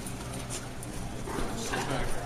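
A person's muffled, wordless voice rising near the end, with scattered knocks over a steady low electrical hum.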